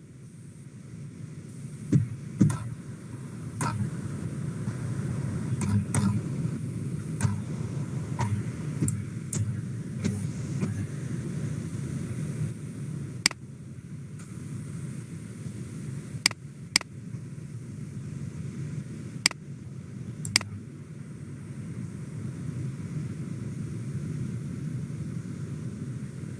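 Scattered single clicks of a computer mouse, about fifteen in all and spaced irregularly, over a steady low background rumble.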